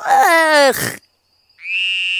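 A frog's croak imitated by a person's voice, one call falling in pitch. About a second and a half in, a steady, high buzzing tone starts and holds for about a second.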